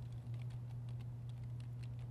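Computer keyboard typing: scattered, irregular light clicks over a steady low hum.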